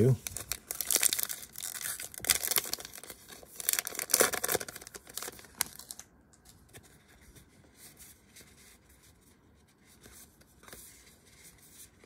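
Foil wrapper of a trading-card pack being torn open and crinkled for about six seconds, loudest twice. After that, quieter rustling and light ticks as the cards are slid out and handled.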